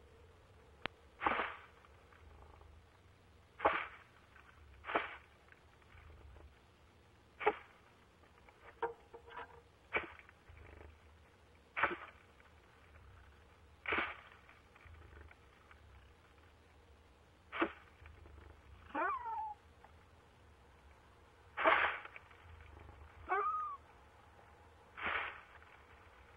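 Female barred owl calling from the nest-box entrance: about a dozen short, raspy, cat-like calls, one every second or two. Two of the later calls slide down in pitch.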